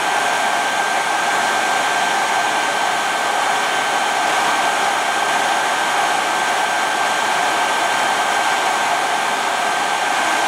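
Hand-held hair dryer running steadily, blowing air, with a thin high whine held over the rush of air.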